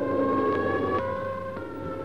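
Engine-driven civil defense air raid siren wailing, one long sustained note that creeps slightly up in pitch, signalling the alert.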